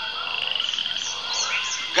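An animal's rapid pulsed trill, shrill and lasting under a second, near the start, over a steady high-pitched background chorus with a few short chirps.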